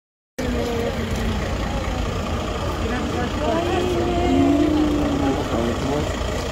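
Outdoor roadside ambience: a steady low rumble with indistinct voices of people talking, one voice clearer near the middle.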